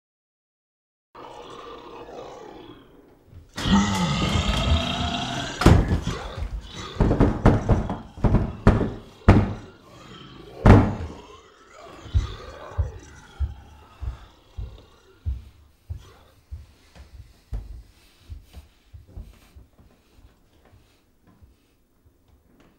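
A long, loud, wavering cry. Then a run of heavy thumps and bangs against a door, dense and irregular at first, spacing out and growing fainter toward the end.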